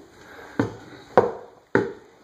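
Three hollow thumps of footsteps on bare wooden stair treads in a small enclosed stairwell, a little over half a second apart, the middle one the loudest.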